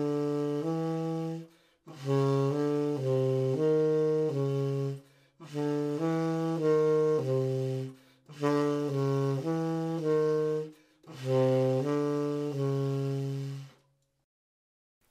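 Tenor saxophone playing in its low register: short phrases of four or five notes, separated by brief pauses, moving in small steps between concert C and the E a major third above. It is a chromatic practice exercise that uses the intervals inside a major third in non-repeating order.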